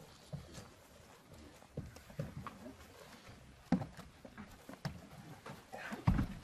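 Scattered footsteps, knocks and bumps as people climb into the back of a van, with gear and clothing rustling; the sharpest knock comes about two-thirds through.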